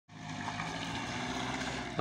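A steady low hum over an even wash of noise, like a motor vehicle's engine running.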